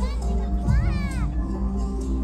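Show music with held tones and a low beat about every two seconds, under the chatter of an outdoor crowd with children's voices. A high voice or sound slides up and down about a second in.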